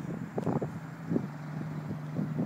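A vehicle engine running at a steady pitch, with gusts of wind buffeting the microphone.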